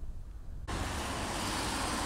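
Outdoor background noise with no single clear source: a low rumble, then a steady hiss that starts suddenly a little under a second in, of the kind left by distant road traffic and wind.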